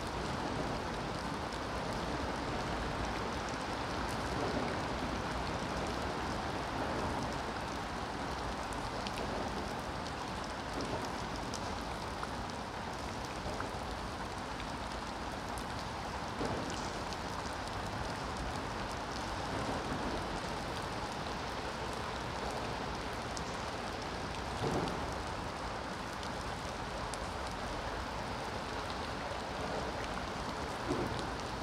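Steady rain falling on the river's surface: an even hiss, with a few brief louder drops or splashes now and then.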